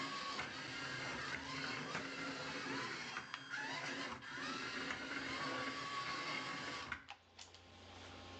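Small robot car's electric gear motors whirring as it drives and turns, the pitch rising and falling with each change of speed. The whirring stops about seven seconds in, leaving a faint hum.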